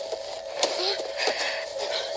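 Film soundtrack playing from a speaker in a small room: a steady held note with a few brief thuds and short vocal sounds from a scene of struggle.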